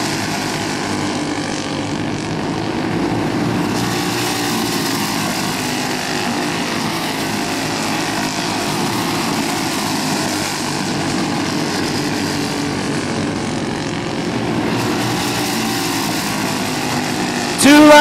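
Small single-cylinder Briggs & Stratton flathead kart engines running at racing speed, a steady drone with gentle swells and dips in pitch as the karts lap the oval.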